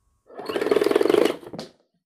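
A buzzing, rattling swoosh sound effect of an animated logo intro, lasting about a second, with a short swish after it near the end.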